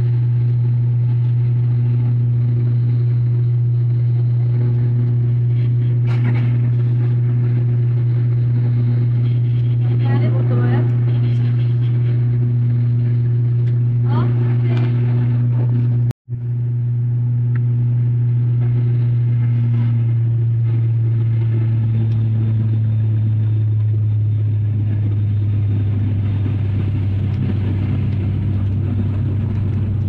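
Turboprop airliner's engines and propellers heard from inside the cabin during the climb after takeoff: a loud, steady low drone with a faint pulsing hum above it. The sound cuts out for a moment about halfway through, then resumes.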